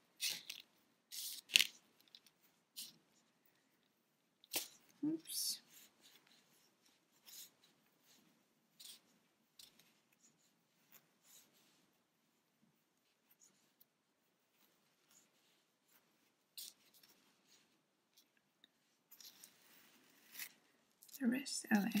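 Polyester fibrefill being pulled apart and stuffed into a small crocheted toy body, pushed in with a crochet hook: faint, scattered short rustles and crackles with long quiet gaps between them.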